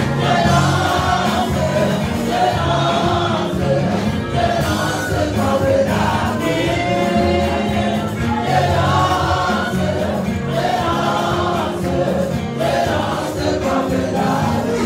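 Gospel choir singing a worship song over instrumental backing, at a steady loud level with no breaks.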